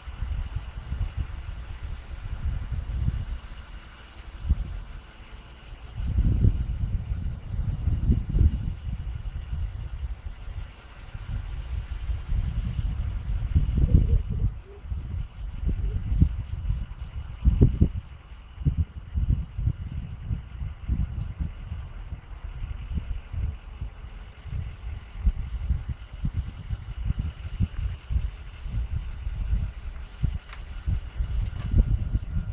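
Wind buffeting the microphone in uneven gusts. Above it, a faint, thin high whine that comes and goes: the distant electric motor and propeller of a small RC float plane in flight.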